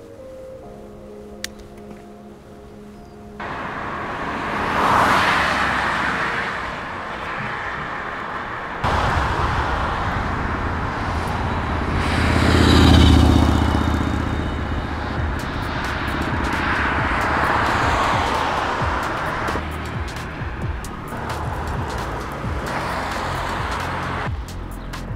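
Background music over the sound of a bicycle ride beside traffic: steady road and wind noise with cars passing, the loudest passes about 5 and 13 seconds in.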